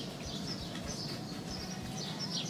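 Small birds chirping, several short high calls in a row, over a low steady outdoor background noise.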